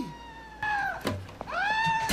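A man's high, drawn-out wailing cries in several held notes that swoop up and down, bleating like a goat.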